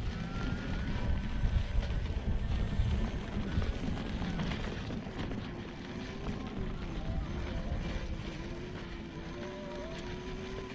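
Gotway MSX 100V electric unicycle's hub motor whining under load on a steep dirt climb, over a constant low rumble. The whine is thin and high at first, then gives way about halfway to a lower, wavering whine.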